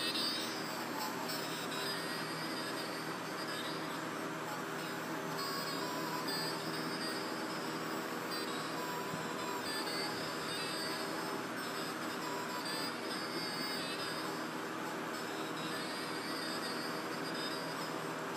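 Musical plush reindeer toy playing its song, faint and steady.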